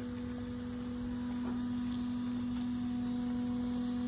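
A steady hum: one unchanging low tone with a fainter higher one, over a faint low background noise.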